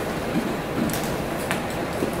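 Microphone handling noise: a few sharp knocks and rubs as a handheld microphone is taken off its stand and brought up to speak, over a steady room hiss.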